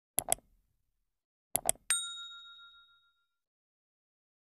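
Subscribe-button animation sound effect: a quick double click, another double click about a second and a half later, then a bright bell ding that rings out and fades over about a second and a half.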